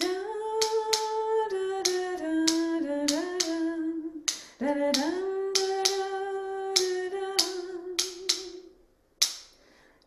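A woman sings the pre-chorus melody line on a held vocal sound, in two phrases whose pitch steps down note by note. Sharp taps beat out the ostinato rhythm (ta ti ti zaa ta) under her voice, and a single tap comes near the end.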